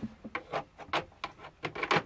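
Light, irregular clicks and taps of small plastic toy pieces being handled, about eight or nine in two seconds.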